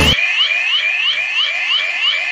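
Electronic alarm sound effect: a rapid series of short rising chirps, about four a second. Intro music cuts off just after it begins.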